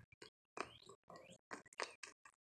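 Near silence: faint outdoor background broken by a few brief, faint, scattered sounds.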